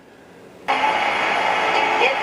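Vintage tube radio switched on or tuned in, its speaker starting suddenly with a steady rush of AM static hiss about two-thirds of a second in, while it is tuned to a distant AM station that takes some pulling in.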